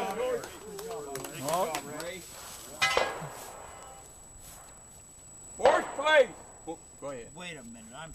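Men's voices talking in the open, with one sharp clink about three seconds in.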